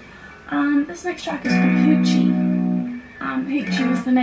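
An electric guitar chord strummed once about a second and a half in and left to ring for about a second and a half.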